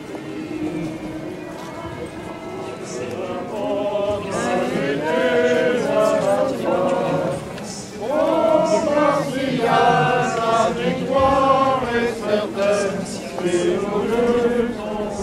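A crowd of voices singing a hymn together, with long held notes, growing louder about four seconds in and again about halfway through.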